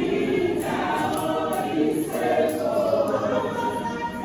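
Church women's choir singing a gospel song in several-part harmony, voices carrying through a reverberant hall.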